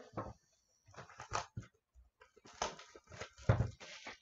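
Irregular light clicks and knocks from objects being handled on a tabletop, about a dozen in four seconds, the loudest group about three and a half seconds in.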